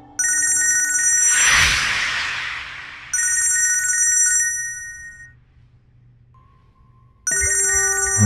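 Mobile phone ringtone ringing: a high warbling electronic ring sounds three times, at the start, about three seconds in and near the end, with a short gap of near quiet before the last ring. Over the first ring there is a loud whooshing rush.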